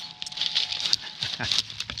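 Irregular crackling and rustling of dry leaf litter and twigs being moved through, with a short laugh near the end.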